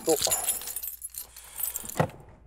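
Light metallic jingling and clinking of small hard parts being handled, with a sharp click near the end.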